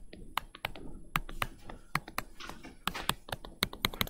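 Stylus tapping and clicking on a tablet screen while drawing short tick marks and numbers by hand: a string of irregular sharp clicks, about three or four a second.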